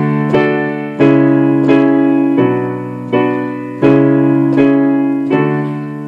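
Digital keyboard on a piano sound playing slow two-handed block chords, the bridge progression of the song. Each chord is struck twice, about 0.7 s apart, and rings and fades before the next chord comes in, about every one and a half seconds.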